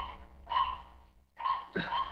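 A pause in a man's narration: three faint, short breathy vocal sounds, over a low steady hum.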